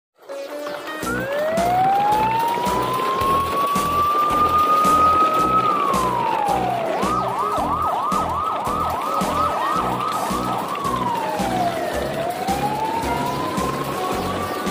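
Siren sound effect: a slow rising wail, a fall, then a rapid up-and-down yelp warble, another fall and a rise again, laid over background music with a steady beat.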